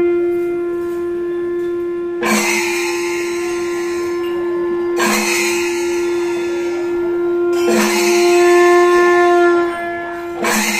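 A wind instrument holding one steady, unbroken note, with a short noisy crash roughly every two and a half seconds.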